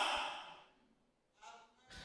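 A man's breathy exhale trailing off at the end of a spoken question and fading out within half a second. It is followed by near quiet, with a faint, brief voice sound about one and a half seconds in.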